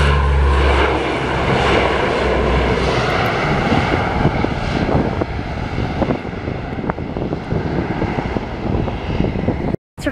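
A fixed-wing aircraft flying low past with a steady engine rumble that is loudest at the start and slowly fades away.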